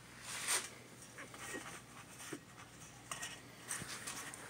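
Short scratching and rustling noises from a two-week-old puppy being handled and shifting in a metal bowl on a kitchen scale, the loudest about half a second in.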